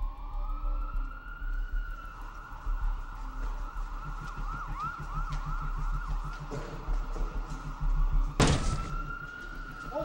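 Police car sirens wailing, with several sirens overlapping in quick up-and-down yelps through the middle. A sudden loud burst of noise cuts across them near the end, and a single wail rises again afterwards.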